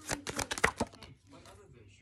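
A deck of oracle cards shuffled by hand: a quick run of soft slaps and clicks in the first second, then it fades to faint handling.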